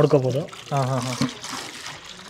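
Water draining from a semi-automatic washing machine's outlet hose into a plastic bucket: a steady pouring trickle and splash, under a man's speech.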